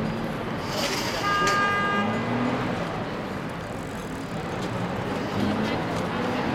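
Street traffic with heavy vehicles driving off, and one short steady horn toot of under a second about a second and a half in.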